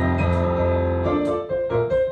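Kawai digital piano being played: a held chord for about the first second, then a run of separately struck notes in a rhythmic pattern.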